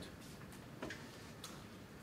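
A few faint, irregularly spaced clicks over quiet room tone.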